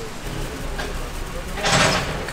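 A thin plastic bag rustling in a short loud burst near the end, as a fried pastry is shaken in powdered sugar inside it, over a low steady rumble.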